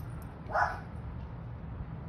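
A puppy gives one short bark about half a second in.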